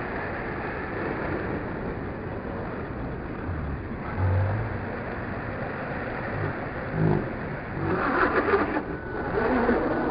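Steady background noise with a few low thumps, then, from about eight seconds in, a radio-controlled car approaching on dirt: its motor grows louder and its pitch shifts as it nears, passing close just at the end.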